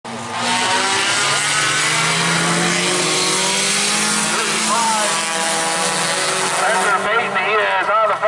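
Engines of a pack of short-track race cars running hard as the field passes close by: several engines together, loud and steady. The engine noise drops in the last second, and a man's voice over the track loudspeaker comes through.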